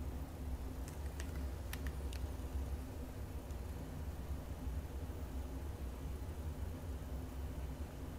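A steady low hum, with a few faint clicks between one and two seconds in.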